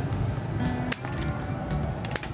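Scissors snipping through a colocasia leaf stalk, one sharp snip about a second in.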